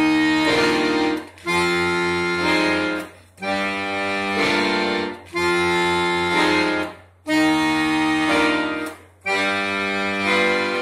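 Piano accordion playing held chords on its reeds, changing chord about every two seconds with a short break between each.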